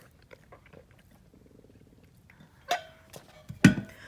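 A person sipping and swallowing water, with small mouth clicks, then a sharp knock about three seconds in and a louder thump near the end.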